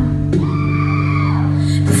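Live pop band playing a short instrumental gap between sung lines: held chords over a steady bass. A voice comes back in at the very end.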